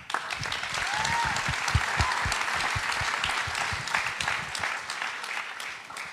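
Audience applauding: many hands clapping at once, starting right away and tapering off near the end.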